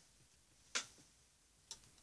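A few soft, sharp clicks in a quiet room: the loudest about three-quarters of a second in, a faint one just after it, and another faint click near the end.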